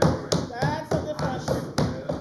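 Members banging their hands on wooden desks in approval, a quick, uneven run of knocks several times a second, with a voice calling out briefly.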